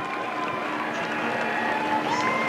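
Vehicle engine running steadily along the marathon course: a low hum with a steady whining tone over it.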